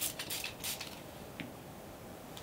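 A small pump spray bottle spritzing water onto a cotton polishing chamois: two or three short sprays in the first second, then a faint click. The water wets the chamois so it glides over the wax polish instead of dragging.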